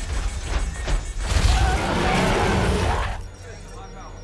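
Film battle sound effects of a giant robot fighting a monster: a dense din of heavy metal crashes and impacts over a deep rumble, with the pilots' strained yells. The din drops away to a quiet hum about three seconds in.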